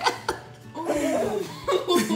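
Laughter over background music.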